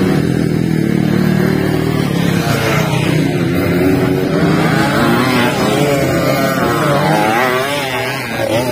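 Several small dirt-bike engines running together, their pitch rising and falling as the riders rev through the turns.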